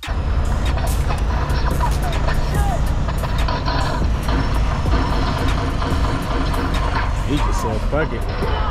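Semi-truck's engine and road noise heard from inside the cab while driving, a loud, steady rumble that starts abruptly at a cut.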